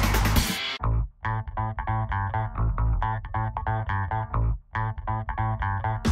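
Background music: a busy track breaks off under a second in, and a plucked bass and guitar riff of quick repeated notes takes over, with a brief gap near the end.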